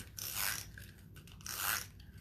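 Scissors snipping through a strip of patterned paper, two cuts about a second apart.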